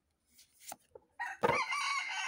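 A rooster crowing: one long call starting a little over a second in, after a few faint clicks.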